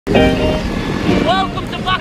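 A man's voice singing with long, wavering notes over the buggy's engine running steadily underneath.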